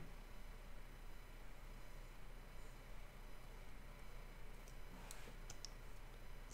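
Faint, steady low hum of room tone, with a few light clicks of computer keys in quick succession near the end.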